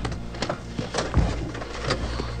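A steady low hum of a helicopter heard from inside its cabin, with a few irregular clicks and knocks.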